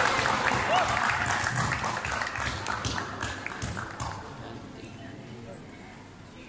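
Spectators shouting and clapping in reaction to a takedown, dying away over about four seconds.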